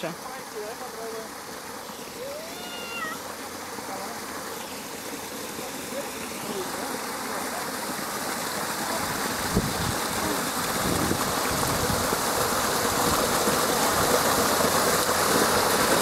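Water of a rocky cascade fountain rushing and splashing over stones, growing steadily louder.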